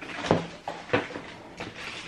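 A few irregular knocks and light handling noise as a boxed kitchen faucet is taken out of its cardboard box with a foam insert.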